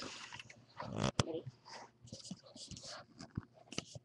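A few sharp clicks of fingers handling Lego bricks on a toy gumball machine, with a short spoken word between them.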